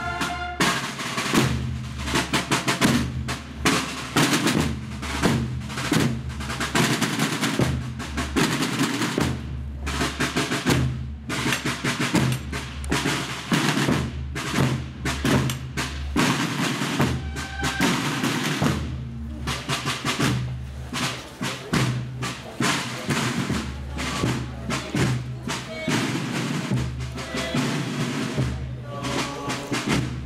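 Procession drums with large wooden shells, beaten with sticks in a steady, dense marching rhythm.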